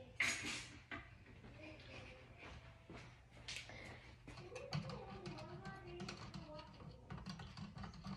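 A spoon clicking quickly and lightly against a cup as a drink is mixed by hand, after a short noisy burst near the start.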